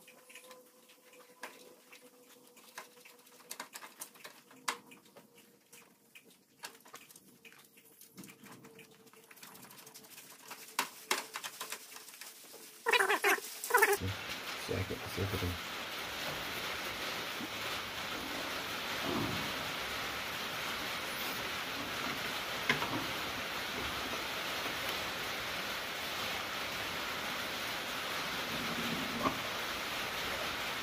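Light clicks and taps of hand work on the brake booster mounting brackets at a car's firewall. After a louder knock about halfway through, a steady hiss takes over, with a few soft knocks as the brake booster is handled.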